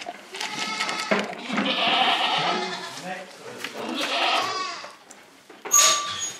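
Angora goats bleating: three long, wavering calls one after another. A sharp metallic clank near the end.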